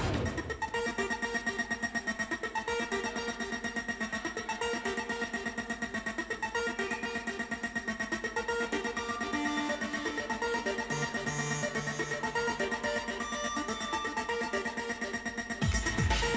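Early-1990s UK rave techno played live, in a breakdown: the kick drum and bass drop out, leaving a fast-pulsing synth riff over a held high tone. The full beat comes back in just before the end.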